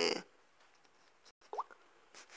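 A single short spoken word at the start, then near-quiet room tone broken by one faint, brief rising squeak about one and a half seconds in.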